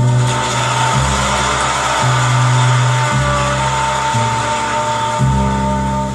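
Live jazz record playing on a turntable: a horn holds one long note over slow bass notes that change about once a second, with a hissy wash behind them.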